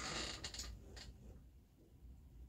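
Shuttle passed by hand through the open shed of a floor loom, sliding over the warp threads: a short swish at the start, then two or three softer scrapes.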